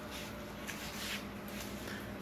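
A few faint ticks of a small dog's nails on a tile floor as it walks, over low room noise.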